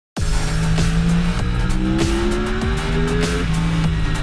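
Sportbike engine accelerating, its note rising steadily for nearly two seconds in the middle, under loud music with an even beat.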